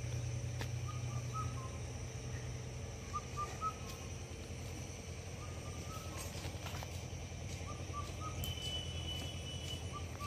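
A bird calling outdoors: a short phrase of three or four notes, repeated about every two seconds, over a steady low hum.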